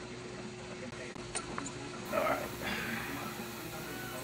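Steady hum of running shop equipment, with a light tick about a second and a half in and two short scraping or handling sounds a little past halfway, as tooling is worked on an aluminium cylinder head.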